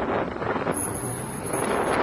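Street traffic passing as a steady rush, with wind on the microphone. A thin high-pitched whine sounds for about a second in the middle.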